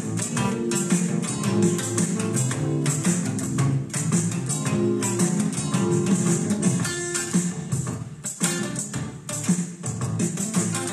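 Electric guitar strummed in a steady rhythm-guitar part, recorded while the song's backing tracks play back.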